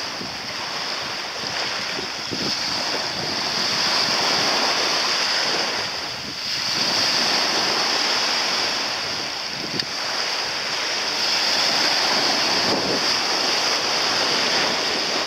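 Rushing of wind and sea water at the shoreline, a steady noise without tones that swells and eases every few seconds.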